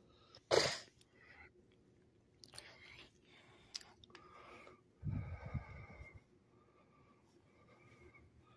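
A short, sharp breath noise close to the microphone about half a second in, then a quiet room with faint, indistinct voices around the middle.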